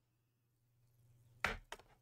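A sharp knock about one and a half seconds in, then a fainter click.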